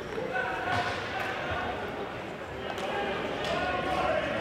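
Indoor ball hockey rink sounds: muffled voices of players and spectators echoing in the arena, with a few sharp knocks of the ball and sticks on the sport-court floor.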